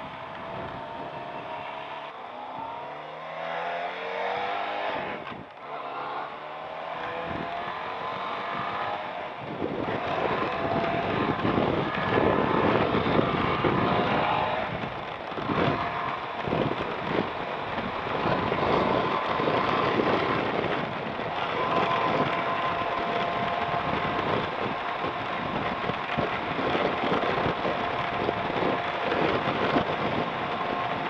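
Benelli TRK 502's parallel-twin engine accelerating through the gears, its pitch climbing three or four times with brief breaks for the shifts. It then settles into a steady cruise buried in loud wind rush on the helmet microphone.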